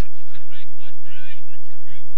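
Faint distant shouts and calls from players and spectators at a Gaelic football match, heard as brief scattered cries over a steady low rumble of the old recording.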